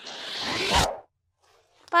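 A short edited-in sound effect over the picture-card change: a rasping noise that builds in level for about a second and then cuts off.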